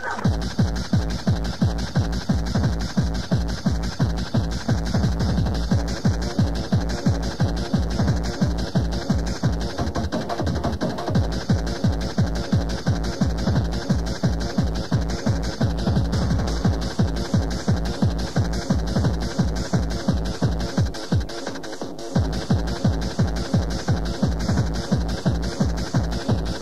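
Hardcore tekno from a DJ mix: a fast, steady four-on-the-floor kick drum under layered, distorted synth sounds. The kick drops out for about a second some five seconds before the end, then comes back.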